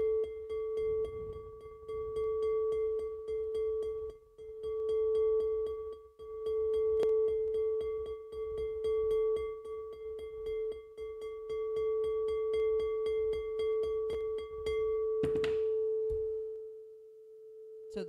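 Crystal singing bowl played by circling a mallet around its rim: one steady, pure tone with fainter overtones that swells and dips in loudness. About fifteen seconds in, a brief rub as the mallet comes off the rim, then the ringing dies away.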